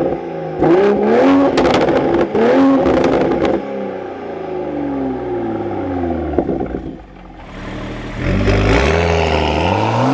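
Toyota Supra's B58 3.0-litre turbo inline-six, revved in three quick blips through an AWE Touring resonated catback exhaust with crackles between them, then falling slowly back toward idle. About seven seconds in, a second engine tone rises as the Supra, on its stock exhaust, accelerates away.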